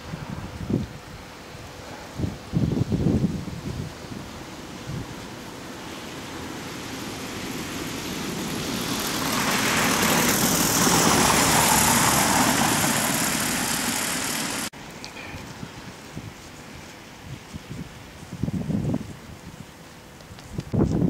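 A car passing on a wet, slushy road: tyre hiss swells over several seconds, peaks, and then cuts off suddenly. Low rumbles of wind on the microphone come early and again near the end.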